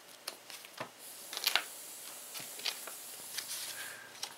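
Paper cards and leaflets rustling and sliding against each other as they are leafed through by hand, with a few light flicks and taps.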